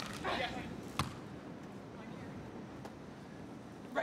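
A Wilson beach volleyball struck hard by hand on the serve, then a second sharp hit of the ball about a second later as it is played on the other side. A brief voice follows the serve, over a low background of spectators.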